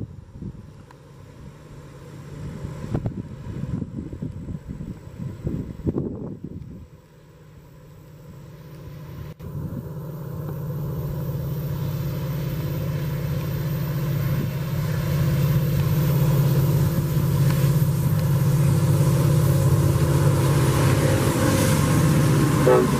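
Wind buffeting the microphone for the first several seconds, then the steady low drone of a diesel freight train's locomotives, growing gradually louder as the train approaches.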